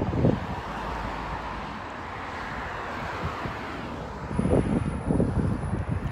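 Road traffic going by: a steady rush of passing vehicle noise, with wind buffeting the phone's microphone in low gusts at the start and again near the end.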